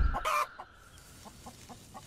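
Domestic hen clucking over her chicks: a louder call in the first half second, then a run of soft, short clucks.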